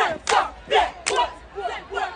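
A cheer squad shouting a rhythmic chant together in short, punchy syllables, with sharp claps on the beat.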